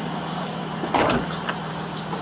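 Police squad car engine idling steadily close by, with a short burst of noise about a second in.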